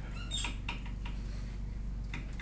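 A steady low hum with a few brief high squeaks and clicks in the first second.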